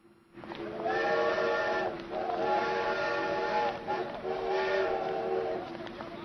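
Train whistle blowing three long blasts of about a second and a half each, every blast a chord of several steady pitches.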